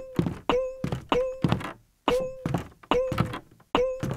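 A run of heavy thuds, about one every second or less, each with the same short moaning tone ringing after it: a repeated staged sound effect.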